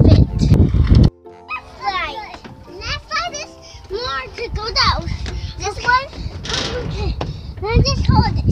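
Young children's voices calling and squealing, high and sliding in pitch, with faint steady music tones underneath. For about the first second a child speaks close over a loud low rumble that cuts off abruptly.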